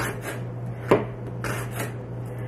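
Kitchen knife slicing by hand through a thick chunk of raw cabbage on a cutting board: a series of short crisp cutting strokes, about two a second, the loudest about a second in.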